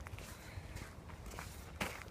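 Footsteps on a gravel path at a walking pace, with a few faint irregular crunches and a sharper one near the end.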